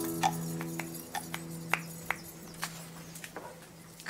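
Film score music: a held low chord fading away, with scattered sharp clicks or knocks over it.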